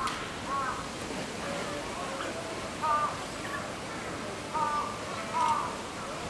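Animal calls: short, arched calls repeated in runs of two or three, about half a second apart, over a low murmur of voices.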